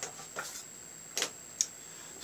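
A few faint clicks and taps of makeup items being handled as an eyeshadow palette is reached for and picked up, the loudest a little past the middle.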